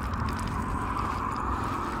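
Street ambience beside a road: a steady hiss with a low rumble underneath.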